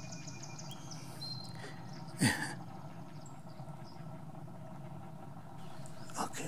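Wild birds calling over a steady low background of pond sounds: a few short, thin, high whistled notes, and one short, loud call about two seconds in that falls in pitch.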